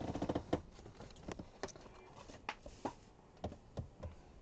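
Hard plastic trading-card holders in a plastic sleeve being handled on a desk: about seven short, sharp clicks and taps spread over the few seconds, with a brief voiced murmur at the very start.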